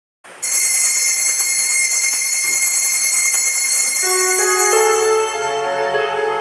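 A cluster of small bells rung continuously, a bright steady jingle that rings out as the signal for the start of Mass. About four seconds in, an organ begins playing the opening hymn and the bells fade under it.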